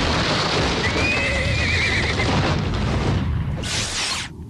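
A horse whinnying once, a wavering call about a second in, over a continuous loud rush of noise. A short hissing burst comes near the end.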